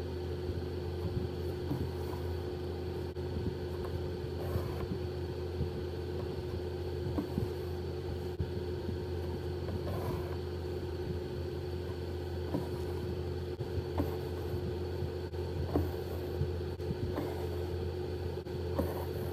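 A steady low hum with a constant tone runs throughout, with faint irregular scratches and ticks of a needle and embroidery thread being drawn through fabric stretched in a wooden hoop.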